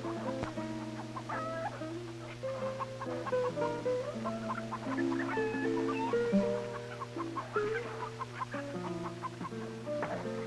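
Guitar music: a melody of plucked, held notes stepping up and down in pitch, over a steady low hum.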